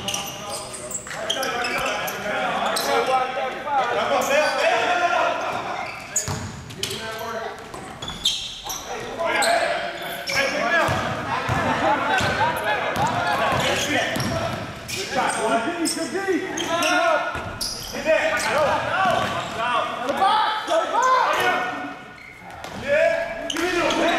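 Basketball dribbled and bouncing on a hardwood gym floor during play, as scattered sharp knocks, under indistinct voices of players and spectators in a large gym.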